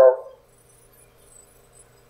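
A man's drawn-out "So" trailing off at the very start, then a pause with only faint room hum.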